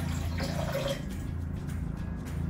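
Water poured from a glass measuring cup into liquid in a glass mixing bowl, a faint splashing trickle mostly in the first second.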